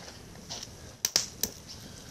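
Wood campfire crackling, with a few sharp pops in the second half.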